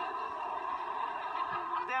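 Audience laughter from a conference crowd, played back through laptop speakers.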